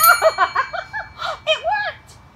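A small bell rings as the last of a row of toppling cereal boxes strikes it, its tone dying away over about a second. Over it a woman gives high-pitched excited whoops and laughter.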